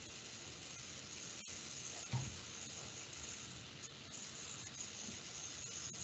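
Faint, steady hiss of an open microphone's background noise on a video-call line, with one brief soft sound about two seconds in.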